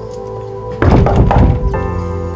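Knocking on a wooden front door: a quick burst of several loud knocks about a second in, over background music.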